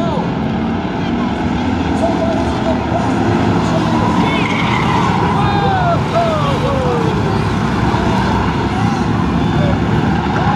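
A field of short-track stock car engines running together, loud and steady, as the pack races around the oval. In the middle, several falling squeals as cars slide and spin on the pavement.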